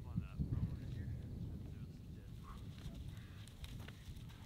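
Quiet outdoor ambience with a low rumble and faint, distant voices.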